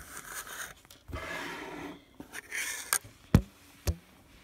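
Handling noise: the phone and its clip-on lens being moved about, with rubbing and scraping against the microphone, then three sharp knocks near the end, the loudest a little after three seconds in.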